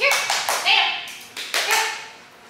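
Several sharp hand claps in quick pairs, with a short high call in between: a handler clapping and calling to bring her dog to her.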